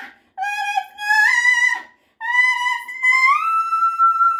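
A woman singing solo, unaccompanied, in a high voice with vibrato. Two short phrases come first, then a third that climbs about three seconds in to a long, held high note.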